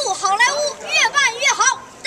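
A young boy's high voice, vocalizing in short quick phrases that slide up and down in pitch.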